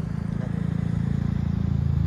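Motorbike engine idling steadily with an even low throb, getting a little louder toward the end.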